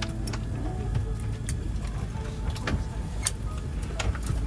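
Airliner cabin at the gate after landing: a steady low hum, with several sharp clicks and knocks as passengers open the overhead bins, and faint voices.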